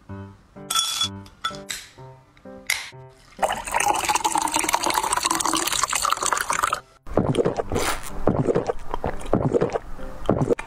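Cola poured over ice into a glass mug, with a loud fizzing hiss from about three seconds in that stops suddenly around seven seconds. Before it, background music with plucked notes and a few sharp clinks; after it, more crackling fizz.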